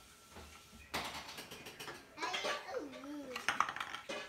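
Toy blocks being handled and knocked together, a run of light clicks and clatter starting about a second in. A short wordless vocal sound comes through partway.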